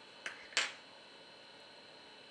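Two sharp clicks about a third of a second apart, the second louder, from a small metal hand tool such as tweezers being set down on the work surface.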